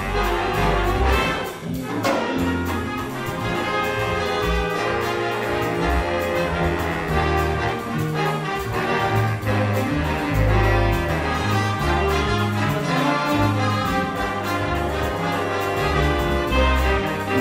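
A jazz big band playing live, trumpets and trombones in a full ensemble passage over bass and drums, with a cymbal keeping a steady beat. A sharp band accent hits about two seconds in.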